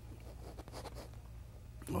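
Palette knife scraping oil paint onto canvas: a few faint scratchy strokes over a low steady hum.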